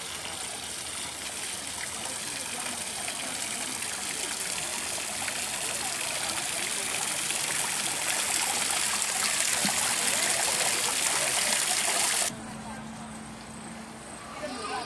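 Water from a small ornamental rock waterfall splashing steadily into its pool, growing louder, then cutting off abruptly near the end.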